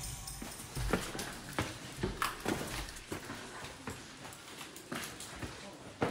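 Footsteps on the rough rock floor of a lava tube: irregular knocks and scuffs of boots on loose stone, about one or two a second.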